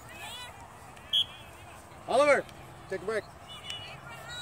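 Short shouted calls from voices across an open soccer field: one loud call about two seconds in, then two quick shorter ones, with a sharp click about a second in.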